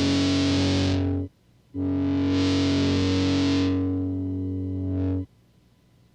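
Distorted electric guitar with effects, holding two long chords with a short break between them. The second chord sustains for about three and a half seconds, then cuts off sharply, ending the song.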